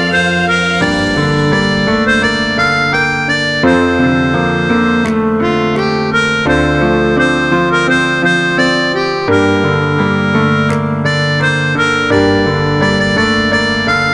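Harmonica playing the verse melody of a pop song over a piano backing of steady broken chords and bass notes.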